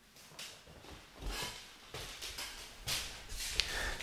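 Soft movement noises: a few irregular knocks, shuffles and footsteps on a wooden floor as a person gets up from the piano and moves about, with a low thump about a second in.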